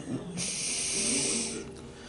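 A man's long, hissing breath out, lasting a little over a second, starting shortly after the beginning.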